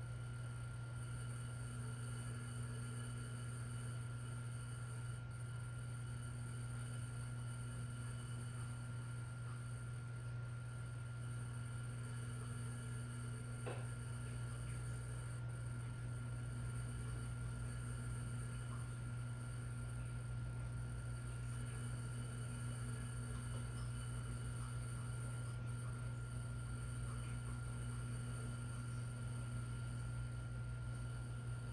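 Small electric motor of a tumbler spinner running steadily, a low hum, turning a freshly resin-coated tumbler so the wet epoxy levels out. One click about halfway through.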